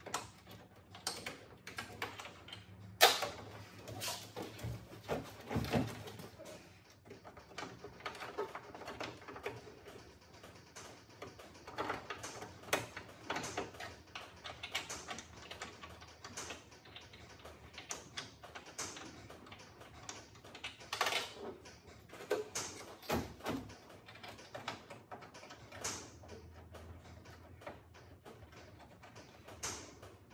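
Scattered metallic clicks, taps and knocks from hands and small tools working inside a car's steel tailgate, with one sharp knock about three seconds in.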